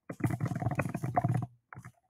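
Typing on a laptop keyboard: a fast run of keystrokes that stops about a second and a half in, followed by a couple of single taps.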